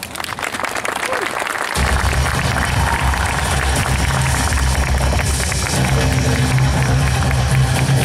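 Audience applauding, joined about two seconds in by music with a heavy bass and drum beat that carries on to the end.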